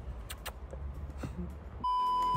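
Faint background noise, then near the end a steady, high-pitched test-tone beep starts abruptly: the bleep sound effect of a TV colour-bars screen.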